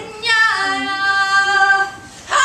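A woman singing one long held note, starting about a quarter second in and stopping just before the end, with a small dip in pitch near its start.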